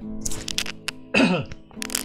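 Background music with steady sustained notes, and a short, loud cough just after a second in, its pitch falling. Several sharp clicks come before it and again near the end.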